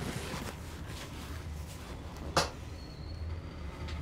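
Hands rubbing on bare skin during a back massage, with a single sharp crack a little over halfway through as the back muscles are worked, over a steady low background hum.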